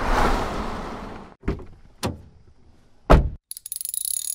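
Sound effects of an animated logo intro: a whoosh that fades out over the first second or so, two sharp clicks, a heavy thud about three seconds in, then a fast run of ratchet-like ticks near the end.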